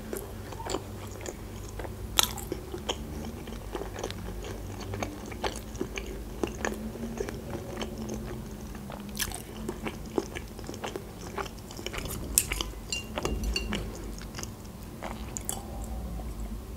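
Close-miked chewing of sushi rolls: soft, irregular mouth clicks and smacks as the food is chewed with the mouth closed.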